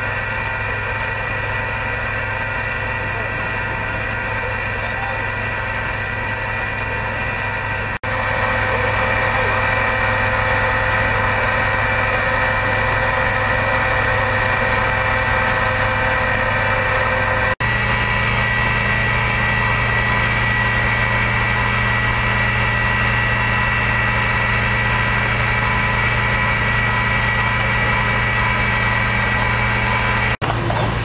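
Fire engine's diesel engine running steadily, driving the pump that feeds the charged fire hoses. The drone changes pitch and level abruptly twice.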